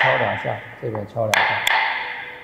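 A voice talking, with sharp taps that ring briefly: one at the start and two close together about a second and a half in, from a metal dough scraper knocking as it works the almond-cookie mould.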